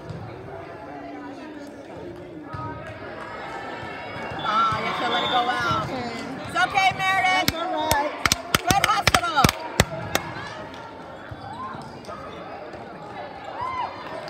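A volleyball bouncing repeatedly on the court floor, about ten sharp thuds over two to three seconds midway through, amid players' and spectators' voices.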